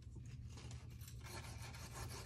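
Knife scraping and cutting into a crumbly, sandy dig-kit bar: a faint gritty rasping made of many quick scratches, a little louder from about halfway through.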